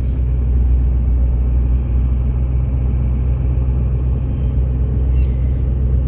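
Steady low rumble of a vehicle driving slowly, heard from inside the cab.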